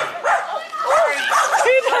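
Small dog in a pet stroller barking and yipping repeatedly in short, sharp calls, agitated after being startled.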